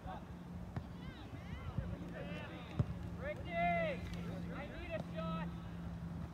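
Players and spectators shouting and calling across a soccer field, with no clear words; the loudest is a long call just past halfway. A steady low hum runs underneath, and a single sharp knock sounds a little before the middle.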